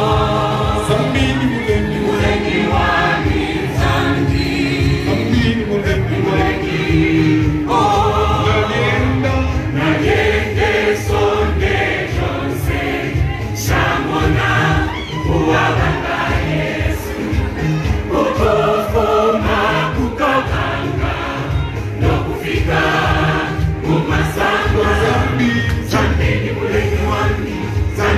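Church choir singing a gospel song live, many voices together, over a steady fast low beat.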